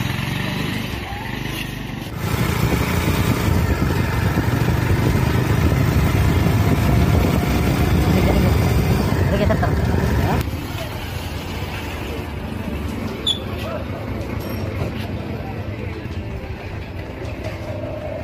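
Motorcycle engine running as the bike rides away, with a louder rushing stretch in the middle that cuts off abruptly about ten seconds in.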